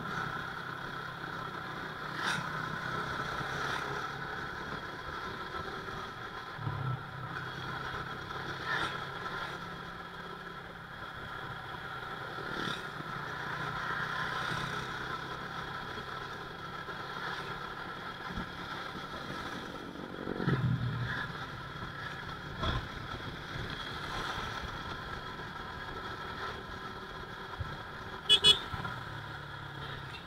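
Motorcycle engine running steadily as it is ridden along a road, with road noise and other traffic around it. A falling engine note comes about two-thirds of the way in, and a sharp double click near the end is the loudest sound.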